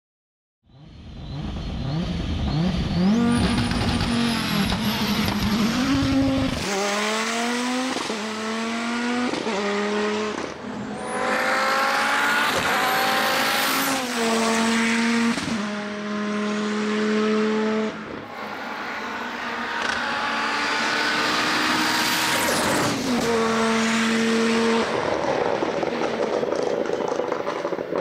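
Audi Sport Quattro S1 E2 rally car's engine at full throttle, rising in pitch through each gear and dropping back at each of many quick upshifts. A thin high whine runs above the engine note.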